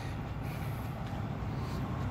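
Steady low rumble of a heavy truck's diesel engine running.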